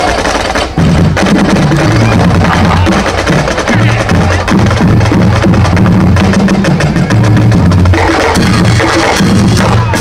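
Marching drum line playing: bass drums and snare drums beating out a dense, loud rhythm, with sharp stick clicks over the low drum tones and a brief break just under a second in.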